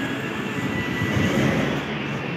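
Steady background noise, an even rush with no speech, with a faint thin tone in the second half.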